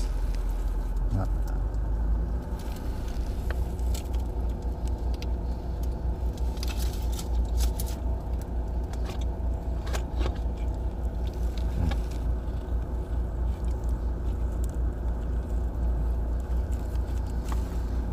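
Steady low rumble of a car cabin, with scattered crinkles and clicks of aluminium foil wrappers being handled while eating.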